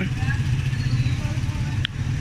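Steady low engine rumble with faint voices of people in the background; the sound drops out briefly near the end.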